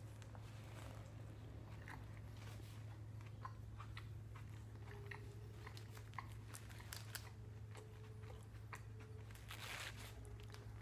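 A person chewing a mouthful of sandwich close to the microphone: faint crunches and wet mouth clicks scattered irregularly throughout, over a steady low hum.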